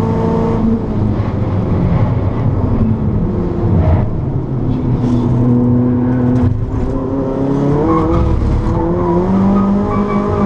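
Turbocharged four-cylinder engine of a tuned Ford Focus RS, heard from inside the cabin on track. Its pitch drops about half a second in as the car slows for a corner, holds through the bend, then climbs again from about seven and a half seconds as it accelerates out.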